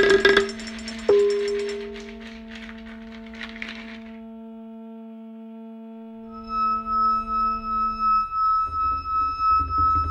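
Electronic music in a DJ set: a single struck, ringing tone about a second in that slowly dies away. About six seconds in a new passage starts, with a low pulsing beat about twice a second under a steady high held tone.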